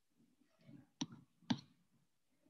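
Two sharp clicks about half a second apart, the second one louder, over faint room noise.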